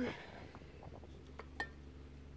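Faint, scattered clinks and knocks of aerosol spray cans and metal tins being shifted on a wooden shelf while someone searches through them. A short hummed note comes in about one and a half seconds in.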